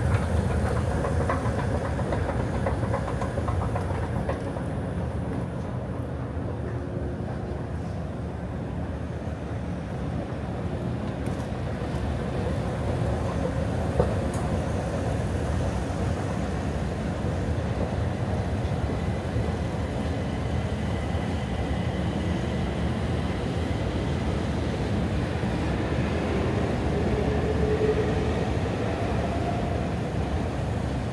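Escalator running: a steady low rumble of the moving steps and drive, with faint whining tones in the second half.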